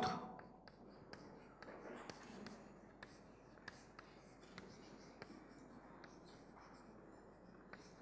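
Chalk writing on a blackboard: faint, irregular taps and scratches of the chalk as a word is written out.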